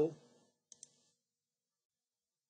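Two faint computer-mouse clicks in quick succession, a little under a second in.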